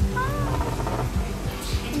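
A cat's meow, one short call rising and then falling in pitch, heard over background music with a steady beat.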